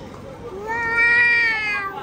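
A toddler's long high-pitched vocal call: one held note of a little over a second that swells, arches slightly and fades away.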